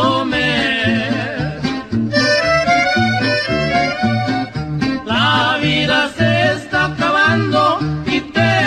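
Norteño corrido music: an accordion plays the melody over a steady, alternating bass and guitar rhythm.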